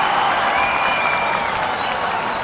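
Stadium crowd at a football match: a loud, steady wash of clapping and crowd noise. A thin, high whistle-like tone rises out of it about half a second in and lasts about a second.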